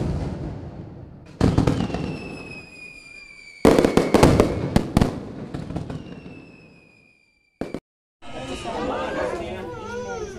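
Fireworks: three sudden bangs, each crackling away over a second or two, with a thin whistle that slides slowly down in pitch. After a brief silence, voices begin about eight seconds in.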